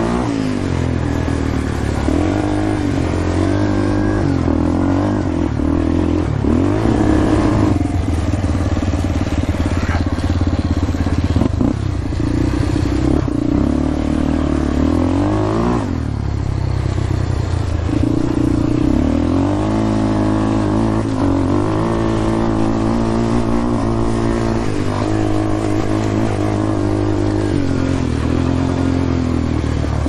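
Yamaha Warrior 350 ATV's single-cylinder four-stroke engine running under way on a dirt trail, its pitch rising and falling again and again as the throttle is rolled on and off through shifts.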